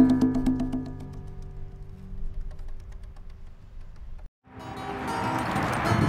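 Final chord of an acoustic guitar ringing out and slowly fading, with a few faint taps over it. About four seconds in the sound drops out briefly, and a different, busier stretch of music begins.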